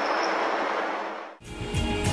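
Steady rushing whir of a small multirotor flying-car prototype's propellers as it hovers. It cuts off suddenly about one and a half seconds in, and electric-guitar theme music begins.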